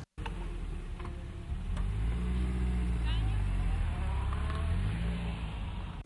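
A motor vehicle's engine passing, growing louder about two seconds in and fading near the end, with faint voices in the background.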